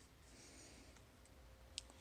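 Near silence: a faint rustle of a paper hexagon cutout on clear plastic being slid across a gridded mat, then a single small click near the end as it is set in place.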